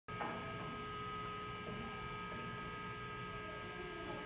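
Steady electrical hum and buzz from a guitar amplifier with a Fender Stratocaster plugged in and its strings not being played.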